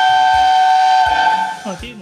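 Steam locomotive whistle blown from the cab by pulling its cord: one loud, steady whistle of several tones sounding together, cutting off about one and a half seconds in.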